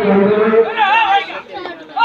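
Voices at a kabaddi match: a man chanting on one steady, monotone pitch, then higher-pitched shouts about a second in.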